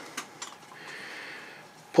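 Soft rustling hiss of 120 film paper backing being pulled forward across a Rolleiflex camera's film path, after a couple of light clicks of handling.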